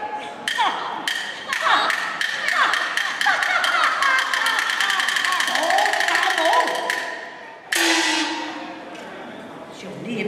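Chinese opera percussion accompanying stage action: a rapid roll of sharp wooden clapper strikes that speeds up. About eight seconds in, a sudden cymbal crash rings out and fades away.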